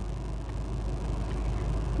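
Steady background noise with a low hum and no distinct events, rising slightly toward the end.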